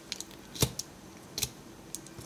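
Plastic joints and parts of a small Transformers Siege figure clicking as they are moved into place by hand: a few sharp clicks, the loudest a little over half a second in.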